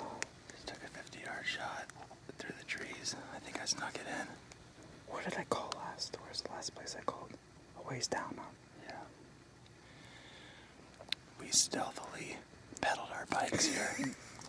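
A man whispering in short runs of words, with pauses between them.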